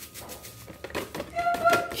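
Plastic cake-mix packet crinkling and rustling as dry corn cake mix is poured from it into a bowl, with many small irregular clicks. A faint voice in the background near the end.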